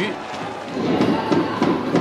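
Ballpark crowd of many voices, swelling into louder cheering and chanting about a second in.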